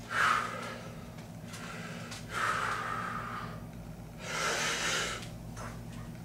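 A man breathing hard through his mouth as he strains to bend a steel bar by hand: three forceful breaths a couple of seconds apart, the first at the start, the others about two and a half and four and a half seconds in.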